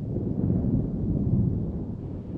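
Low rolling rumble of thunder, steady and deep.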